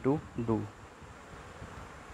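A man's voice finishing a short phrase, then a faint, steady hiss of background room noise.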